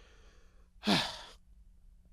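A man's sigh: a faint intake of breath, then one breathy exhale about a second in that falls in pitch.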